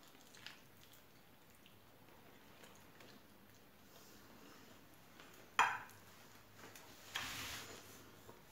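A person quietly chewing a bite of baked puff pastry. The chewing is faint throughout, with one short sharp mouth sound a little past halfway and a breathy exhale near the end.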